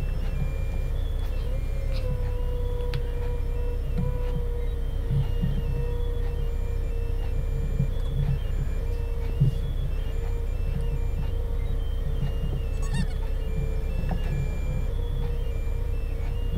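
Doosan 4.5-ton forklift's engine running steadily, heard from inside the cab as the machine travels with a load of rebar. A steady whine comes in about two seconds in and holds.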